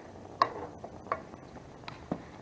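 Control knob of a Heat Hog portable propane heater being turned up after the pilot is lit, clicking three times.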